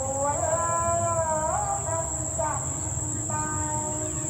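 Jungle insects keeping up a steady, high, even drone, over a slow melody of held notes that slide from one pitch to the next.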